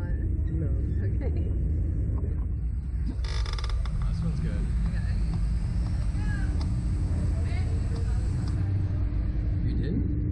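Steady low rumble of a slingshot ride's machinery as the rider capsule is brought down into launch position. A brief harsh hiss comes about three seconds in, with faint voices.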